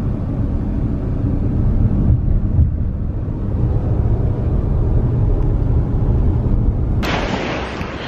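Car driving at speed, a dense low rumble of road and wind noise buffeting the microphone. About a second before the end it cuts to a steadier, brighter hiss of surf breaking on a beach.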